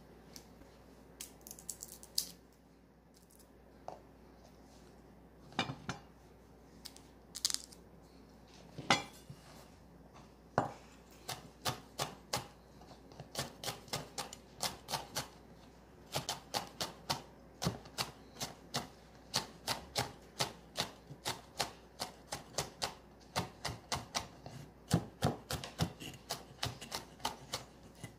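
Chef's knife chopping peeled garlic cloves on a wooden cutting board. It starts with a few scattered knocks, then from about ten seconds in settles into a steady run of quick chops, about three a second.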